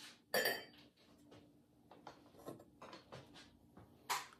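A fired, glazed stoneware pot clinking against hard ceramic as it is lifted out of the kiln. There is one bright, ringing clink about a third of a second in, then a few light taps and knocks as it is handled.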